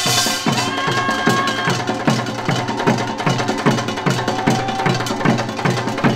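Samul nori percussion ensemble playing: janggu and buk drums beat a steady, driving rhythm of about three strokes a second, while the small kkwaenggwari gong and the jing ring over them.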